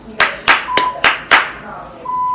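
A person clapping hands five times in quick succession, about three claps a second, sharp and loud.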